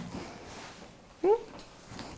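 Faint rustling as a leather tote is handled. Just past a second in comes one short, rising vocal sound, a brief murmur from the woman.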